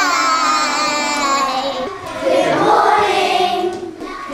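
A group of young girls singing together: one long held note that sinks a little, then a second phrase after a brief break about halfway through.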